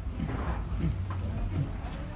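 Steady low rumble of the jet bridge ambience, with three short sliding tones, about two-thirds of a second apart, the first two falling and the last rising.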